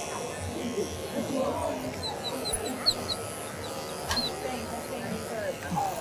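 Electric dog-grooming clipper with a comb attachment running steadily as it works through a doodle's coat, over a murmur of indistinct background voices.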